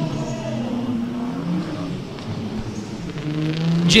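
Two twin-turbo Nissan Z drift cars, a 350Z and a 370Z, running in tandem, their engine notes wavering up and down with the throttle and swelling louder near the end as they close in.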